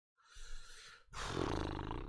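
A man's heavy, exasperated sigh close to the microphone: a breathy intake, then a longer, louder exhale with some voice in it.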